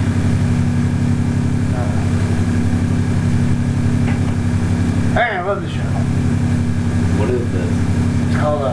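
A loud, steady low hum runs throughout, with a short bit of voice about five seconds in and another near the end.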